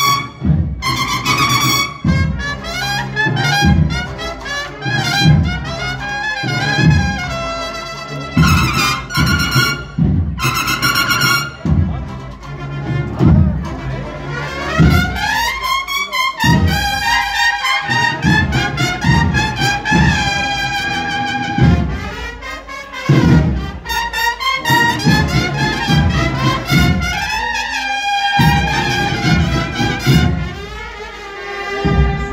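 Spanish cornetas y tambores band playing a march: bugle-style cornets over a steady drum beat.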